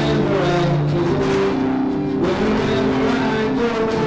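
Acoustic guitar played live through a microphone, its sustained notes changing pitch every second or so.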